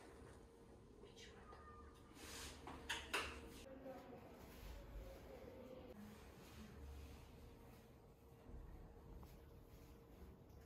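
Near silence in a small room: a faint steady hum, a few soft clicks about two to three seconds in, and a faint, thin voice.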